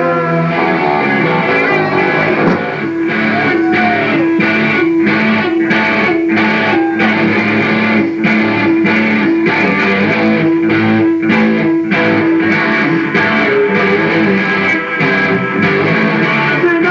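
Punk rock band playing live: strummed electric guitars over bass with a steady beat, in a passage without singing.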